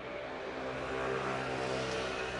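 A motor vehicle passing on the street, its engine hum and road noise growing louder over the first second and staying loud.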